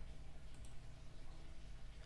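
A few faint computer mouse clicks over a steady low hum.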